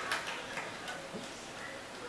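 Audience laughter dying away, with a few faint scattered ticks in the first second.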